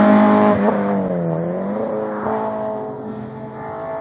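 Hill-climb race car's engine going away up the road after passing, growing steadily fainter. Its note dips in pitch twice and then climbs again as the car pulls away.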